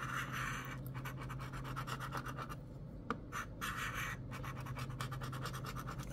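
A coin scraping the scratch-off coating off a lottery ticket in quick, repeated strokes, with a few short pauses between bursts.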